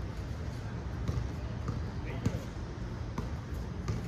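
Basketballs bouncing on an outdoor court, a few sharp thumps about two and three seconds in, with the faint voices of players and a steady low background rumble.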